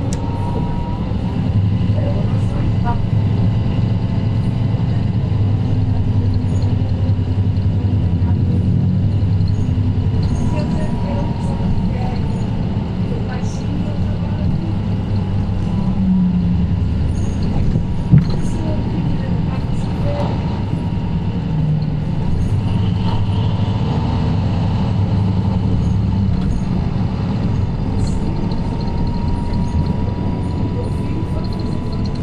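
Inside a moving Mercedes-Benz Citaro C2 K city bus: the low drone of its OM936 six-cylinder diesel and ZF Ecolife automatic drivetrain, swelling and easing every few seconds, with a steady high whine over it. A single sharp knock about eighteen seconds in is the loudest sound.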